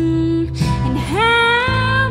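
Live acoustic band playing a slow song: a woman singing over acoustic guitar, mandolin and upright bass. A held sung note ends about half a second in, and the voice slides up into a new long note.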